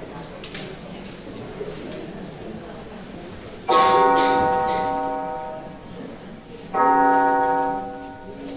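Two piano notes, each struck suddenly and left to ring down over a couple of seconds, about three seconds apart, after a few seconds of low hall murmur.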